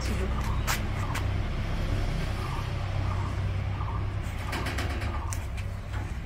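Wind rumbling on the microphone, with cloth rustling and a few sharp snaps and clicks as dried clothes are pulled off a clothesline, several of them together near the end.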